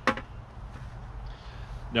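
A single sharp knock as a white plastic five-gallon bucket is set down, followed by low, steady outdoor background noise.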